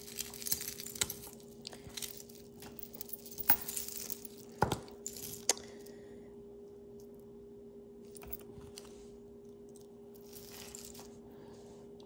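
Metal jewelry chains clinking and jingling as they are picked up and handled: a run of light clicks and rattles in the first half, the sharpest clinks a little before the middle, then only a few faint touches. A faint steady hum lies underneath.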